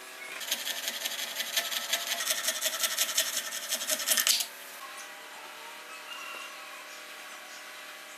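Coping saw cutting a clear plastic strip clamped in a bench vise: a quick, even run of rasping saw strokes that starts about half a second in and stops abruptly after about four seconds.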